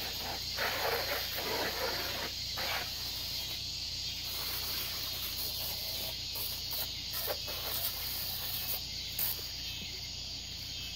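Garden hose spray nozzle hissing as water strikes an ATV for the first few seconds, then stopping, over a steady insect chorus. A few short knocks follow later on.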